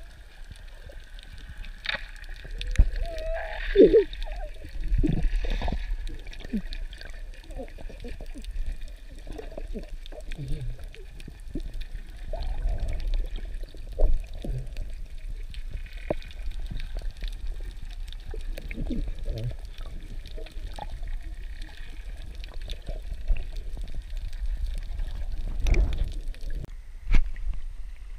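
Muffled underwater sound from an action camera below the surface: water gurgling and sloshing, with scattered sharp knocks, the loudest a few seconds in, again near the middle and near the end.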